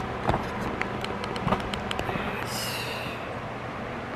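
Handling noise from a handheld camera being moved about: a quick run of small clicks and taps in the first couple of seconds, then a brief rustle, over a steady low hum.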